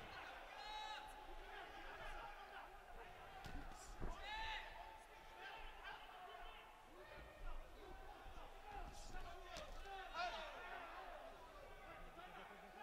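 Faint ringside sound of an amateur boxing bout in a large hall: scattered shouts from around the ring and dull thuds from the boxers' footwork and punches, the sharpest thud about four seconds in.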